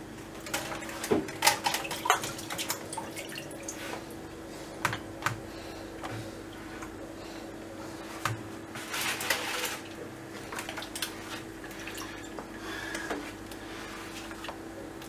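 Hands laying and pressing dampened sheets of dry yufka in a round metal tray: scattered soft rustles, light taps and a longer rustling about nine seconds in.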